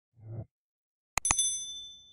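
A soft low thump, then about a second in two quick clicks and a bright, high ringing ding that fades away: an editing sound effect of the kind used for an animated on-screen graphic.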